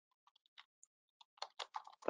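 Faint typing on a computer keyboard: a run of light, irregular key clicks, mostly in the second half.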